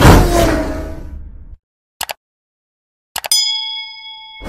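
Outro sound effects: a loud gunshot bang that dies away over about a second and a half, a short click about two seconds in, then mouse clicks and a ringing notification-bell ding that holds to the end.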